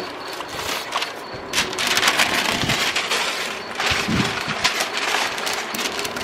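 Newspaper and masking tape being pulled and crumpled off a car bumper after spray painting: a dense run of paper crinkling and tearing, busier from about a second and a half in.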